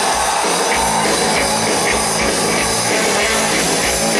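Live rock band playing an instrumental stretch: drum kit with a steady driving beat of about three beats a second under electric guitars and bass, with no vocal.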